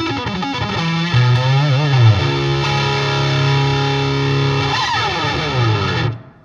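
Distorted electric guitar played through an Eventide H9 harmonizer pedal: quick sliding phrases, then a long sustained note with pitch glides, cutting off abruptly at the end.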